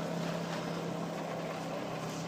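Boat engine running steadily with a low, even hum.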